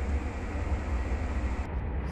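Steady low rumble with a hiss over it, cut off sharply near the end by an edit.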